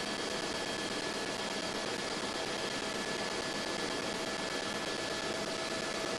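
Steady, even hiss with a few faint steady high tones running through it, with no change in level.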